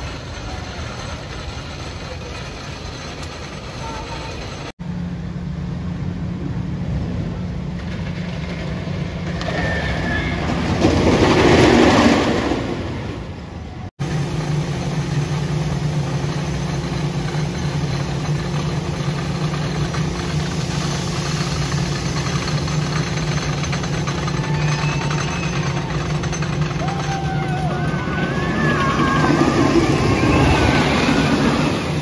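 Wooden roller coaster train rumbling past on its track, swelling to a loud peak and fading over a few seconds about halfway through, over a steady low hum. Near the end the rumble builds again as another pass approaches.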